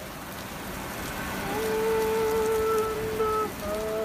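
Steady rain, with sustained musical notes coming in over it about a second and a half in and changing pitch near the end.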